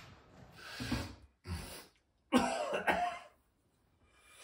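A man coughing and clearing his throat in a few short bursts. The loudest and longest comes a little past halfway.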